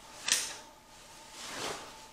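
PASGT body armour vest's nylon shell rustling as it is pulled on over the head: a sharp swish about a third of a second in, then a longer, softer rustle about a second and a half in.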